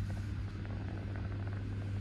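A steady low hum with a few faint ticks.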